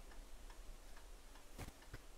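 Near silence in a pause, broken by a few faint, irregular ticks, the clearest about one and a half seconds in.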